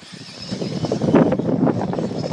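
Electric 1/10-scale RC off-road buggies running on a dirt track: a faint steady high whine over irregular clicks and scrabbling.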